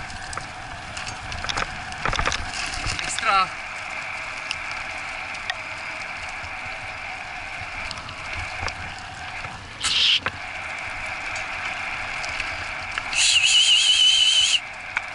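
Wheels of a dog-training cart rolling over a rough dirt track with a steady rolling hum and scattered rattles and knocks from the rig. Near the end a high warbling tone lasts about a second and a half.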